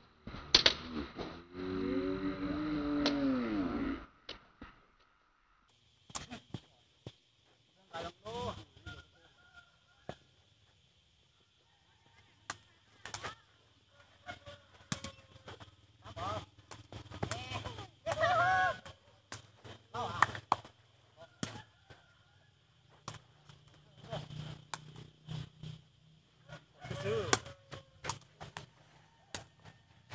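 Sepak takraw rally: the sharp knocks of the ball being kicked and headed back and forth, with players' short shouts between the kicks. A long, loud call fills the first few seconds.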